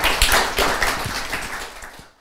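Audience applauding, the clapping thinning and fading away toward the end.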